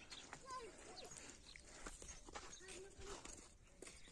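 Near silence, with a few faint distant calls and light clicks.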